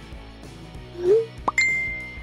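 Light background music with cartoon sound effects: a short rising pop about a second in, a quick upward swoop, then a bright ringing message-notification ding that fades slowly.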